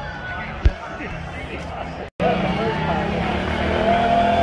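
Street-parade crowd: scattered voices and chatter, with a single sharp thump under a second in. After a brief cut-out about halfway through, louder crowd noise carries a drawn-out pitched sound that rises and then slowly falls.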